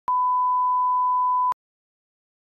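An electronic beep: one steady, unwavering tone about one and a half seconds long, switched on and off abruptly with a click at each end.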